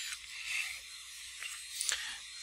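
Steady hiss from a desk microphone during a pause in speech, with a couple of faint short ticks in the second half.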